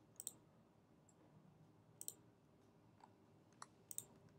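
Faint computer mouse clicks, mostly in quick pairs: near the start, about two seconds in, and twice near the end, over quiet room tone.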